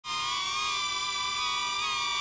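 DJI Neo mini drone hovering, its guarded propellers giving a steady whine of several tones that waver slightly in pitch.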